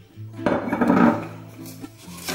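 A brief clatter and scrape of kitchenware about half a second in, over background music with held notes.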